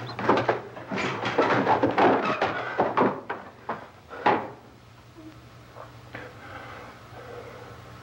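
A quick run of knocks and clatter inside a house for about four seconds, ending in one loudest hit. After that it goes quiet, leaving the steady low hum of an old film soundtrack.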